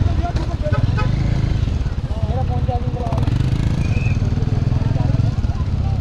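Motorcycle engine idling steadily, with faint voices of people nearby.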